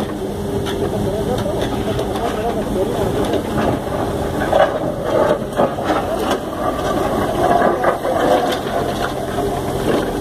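Backhoe loader's diesel engine running steadily while its bucket digs in a muddy canal, with knocks and scrapes as the bucket works among stones and broken cement slabs. Voices talk over the machine throughout.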